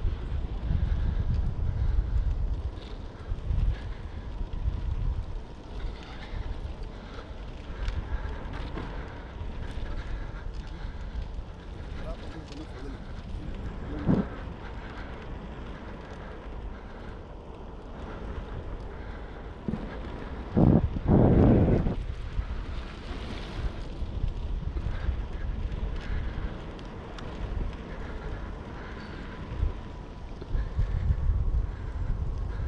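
Wind buffeting the microphone of a bicycle riding along a paved trail, a low rumble that rises and falls in gusts. A short sharp sound comes about fourteen seconds in, and a louder burst lasting about a second comes just past twenty seconds.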